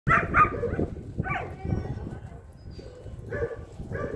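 German Shepherd dog barking in play: a quick pair of short barks at the start, then single barks about a second in and near the end.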